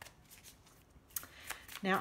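Tarot deck being shuffled by hand, with a few light card clicks.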